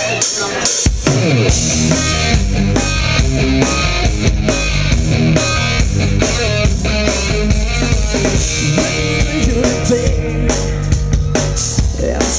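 A live rock band starts a song. After a few drum hits, the drum kit, electric guitars and bass guitar come in together about a second in and play the instrumental intro, with no singing yet.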